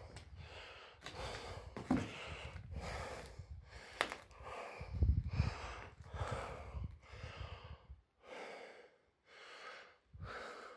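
A person breathing heavily and audibly close to the microphone, in and out more than once a second. Underneath is a low rumble, with a couple of sharp knocks about two and four seconds in.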